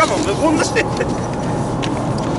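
Steady outdoor background rumble, with a few brief spoken sounds in the first second.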